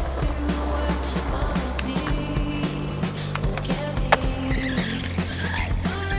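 Skateboard wheels rolling on concrete, with a sharp clack about four seconds in, over music with a steady beat.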